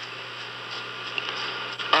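Steady electrical hum with an even hiss, the background noise of an old radio broadcast recording.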